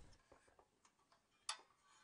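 Near silence broken by one short click about a second and a half in: the wire governor link being pressed into the throttle lever of a small-engine carburetor, with a couple of fainter ticks before it.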